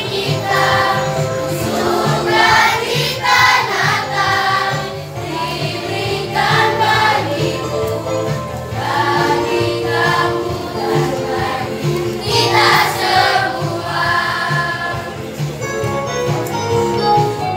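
Children's choir singing a Christmas song in Indonesian over a continuous instrumental accompaniment with a steady beat.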